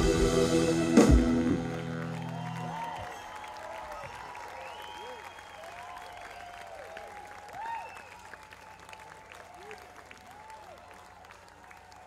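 A live rock band ends a song with a final hit on drums and cymbals about a second in, and the last chord rings out, fading away by about three seconds. The audience then applauds and cheers.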